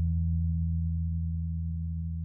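The song's final held note ringing out: a steady low guitar tone slowly fading, its higher overtones dying away within the first second.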